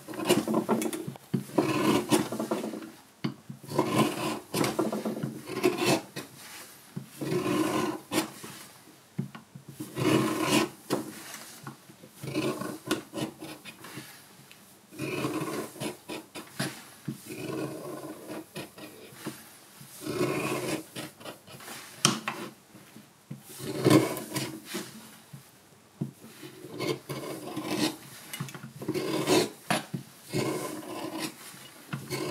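A curved carving blade cutting out the bowl of a wooden spoon: repeated short scraping cuts in the wood, about one a second, in runs with brief pauses between them.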